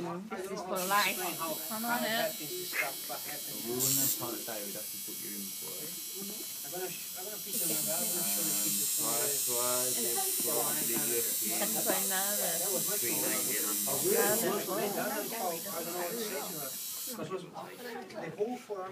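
An electric tattoo machine buzzing steadily, louder from about eight to fourteen seconds in, with women talking and laughing over it.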